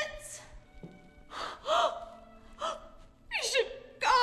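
A woman's short high-pitched vocal outbursts, gasps and cries with no words, the last a squeal that slides down in pitch. Quiet background music runs underneath.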